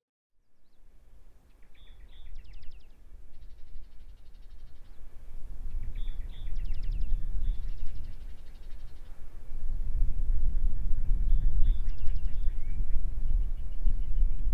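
Outdoor ambience fading in: a bird calling in short, rapid trilling phrases several times, over a low rumble that grows louder from about ten seconds in.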